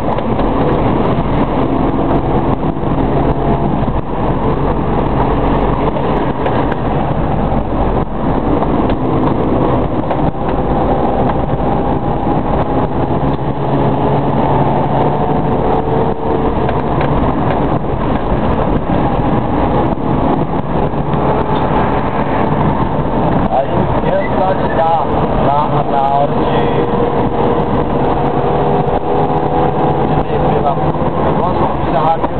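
Car engine and road noise heard from inside the cabin while driving through city traffic, the engine note slowly rising and falling as the car speeds up and slows.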